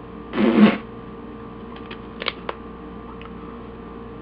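A brief throat or mouth noise from the man, about half a second long, shortly after the start, then a few faint clicks, over a steady electrical hum.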